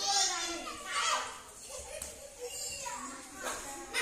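Children's voices calling out and shouting in play during a hand game, loudest right at the start and again about a second in.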